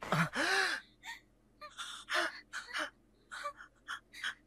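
A sharp gasp with a brief rising-and-falling cry, followed by several short, ragged breaths: an anime character's shocked gasping and panting.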